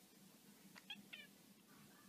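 A tabby cat giving two short, high-pitched meows in quick succession about a second in, both faint.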